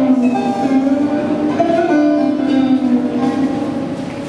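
Vietnamese đàn tranh zither being plucked in a traditional melody, some held notes sliding slightly in pitch.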